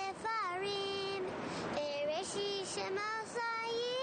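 A high voice singing a slow melody in long held notes that bend and waver, with short breaks between phrases.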